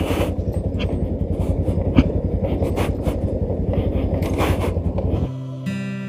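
Motorcycle engine running while riding a rough dirt track, with wind noise and sharp knocks from bumps. About five seconds in it cuts suddenly to music.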